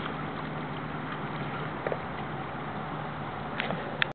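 Steady open-air noise over water as a kayak moves off, with a faint steady low hum and a couple of small clicks near the middle and the end.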